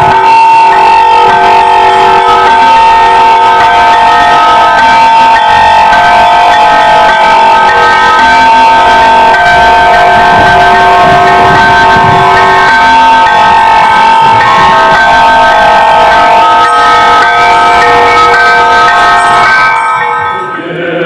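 A loud, sustained chord of several steady tones, held with no beat or rhythm and cutting off abruptly near the end.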